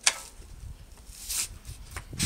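A bucket being handled and lifted by its wire handle: a sharp knock at the start, then a brief scraping rustle about a second and a half in, and a few soft knocks near the end.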